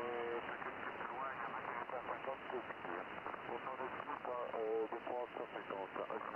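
A French-speaking voice coming from a Yaesu HF transceiver's loudspeaker: amateur radio voice on the 40-metre band, narrow-sounding and overlaid with steady band noise and hiss.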